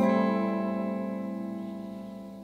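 Electric guitar playing an A minor seventh chord, barred at the fifth fret, strummed once and left to ring, fading slowly.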